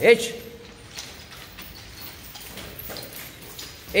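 A short, sharp martial-arts shout (kiai, like "Hah!") right at the start and another just like it at the very end, with faint light knocks in between.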